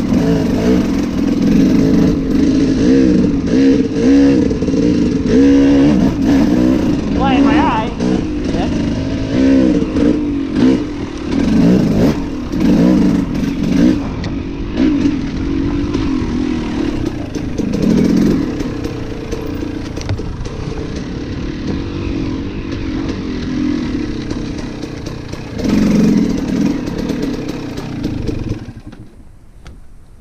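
Dirt bike engine revving up and down repeatedly as it is ridden along a trail, with the pitch rising and falling through the throttle changes. Near the end the engine noise drops away suddenly as the bike comes to a stop.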